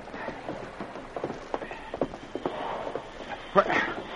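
Radio-drama sound effect of hurried footsteps, two men running up to a riverboat's wheelhouse: a string of irregular knocks over a steady hiss, with a brief voice near the end.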